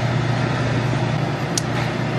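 Steady low machine hum of convenience-store equipment, with a short click about one and a half seconds in.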